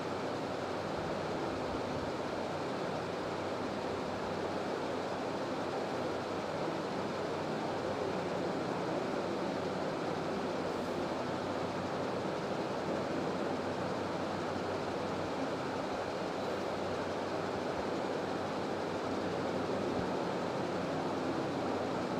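Steady, even room hiss with no distinct sounds in it.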